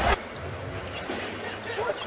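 Basketball game sound in an arena: a ball bouncing on the hardwood court over a steady crowd murmur, with a brief commentator's voice near the end. A louder passage of music and voice cuts off abruptly just after the start.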